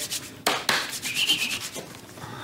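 Newspaper pages rustling as they are handled, with two sharp crackles about half a second in and softer rustling after.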